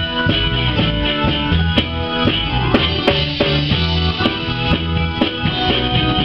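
Live band playing loudly, with a drum kit keeping a steady beat under sustained guitar and keyboard chords.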